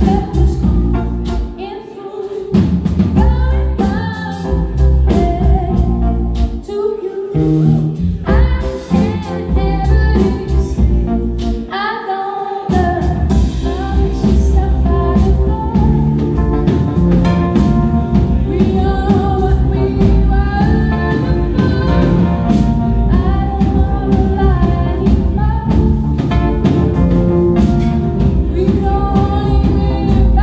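Live band playing a song: a singer over electric bass guitar, drum kit and keyboard. In the first half the bass and drums drop out briefly a few times, then from about thirteen seconds in the full band plays on steadily.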